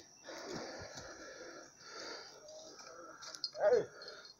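Faint, breathy sounds close to the microphone over quiet outdoor background, with a short voiced exclamation near the end.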